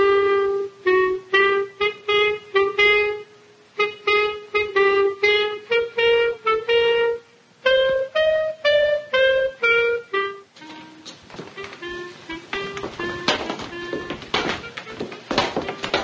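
Clarinet playing a melody of short, separate notes for about ten seconds. It then gives way to softer, lower music with scattered knocks.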